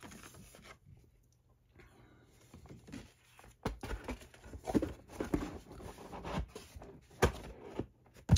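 Stiff black card packaging being handled and laid down on another box: card sliding and rustling, with several soft knocks in the second half after a quiet start.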